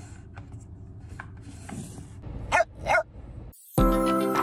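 A dog barks twice in quick succession, short barks a little past halfway, over soft rustling and handling noise. Music starts near the end.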